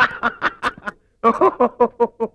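A man laughing loudly in a rapid run of "ha-ha-ha" pulses, which break off for a moment about a second in and then start again.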